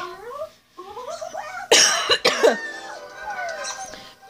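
A woman coughing, two harsh coughs close together about halfway through, from someone who is ill.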